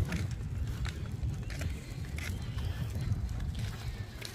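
Wheels of a wagon-style dog stroller rolling over cracked asphalt: a low steady rumble with scattered light clicks and knocks.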